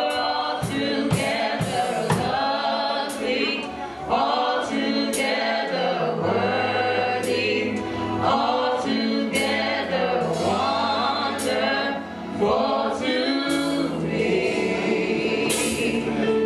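Live gospel duet: female voices sing a melody into microphones over a band accompaniment, with held low bass notes and frequent percussion hits.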